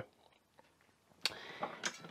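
Near silence, then just over a second in a single click followed by faint rustling.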